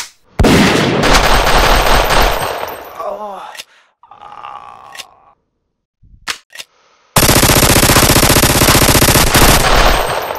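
Gunfire sound effects: a long burst of rapid automatic fire, then brief pained vocal cries, two single shots, and a second long burst of rapid automatic fire near the end.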